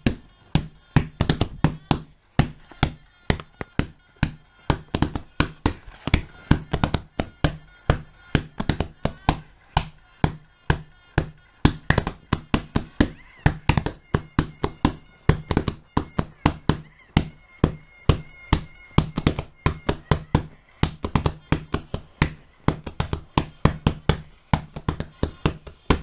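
Hands drumming a fast, steady beat of taps and thunks on a surface close to the microphone, keeping time with a song heard only in headphones.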